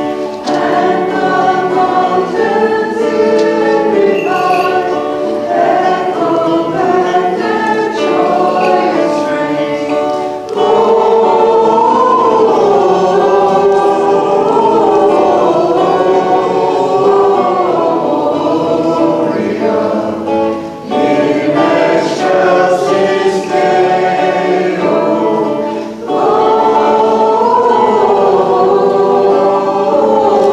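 A choir singing a Maronite liturgical hymn in several voices together, phrase by phrase, with short pauses for breath about ten, twenty-one and twenty-six seconds in.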